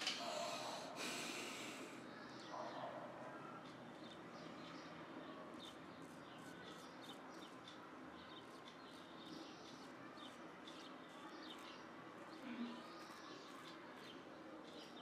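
Focus shavette razor blade scraping through lathered stubble on a second pass: a run of short, faint, crackly strokes through the latter part, after a brief louder rush of noise in the first two seconds.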